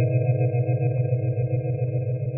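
Ambient electronic improvisation on a software synthesizer (SynthMaster Player): several steady, sine-like tones held as a drone over a low tone that flutters rapidly.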